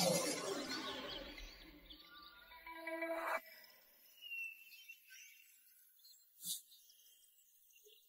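Soundtrack of an animated fantasy scene: a shimmering magic sound effect fades away over about two seconds. Quiet background music follows, with a few sparse notes and a single faint bird chirp, then near silence.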